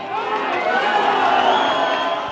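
A small crowd cheering and shouting for a goal just scored, the cheer swelling in the first half second and then holding.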